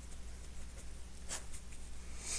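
Pen writing a word on paper: a run of faint scratching strokes, with one louder stroke about one and a half seconds in, over a low steady hum.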